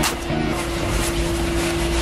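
Steady mechanical hum with a deep low rumble and one held tone, heard from inside a car. The tail of background music dies away in the first half-second.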